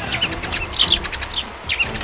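Small birds chirping, short calls repeated throughout, with a few brief clicks near the end.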